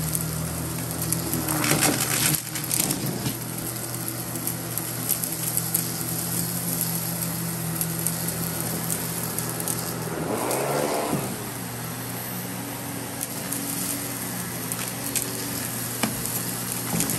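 Miele canister vacuum cleaner running steadily as its floor head is pushed across a rug, with debris clicking and rattling as it is sucked up the wand.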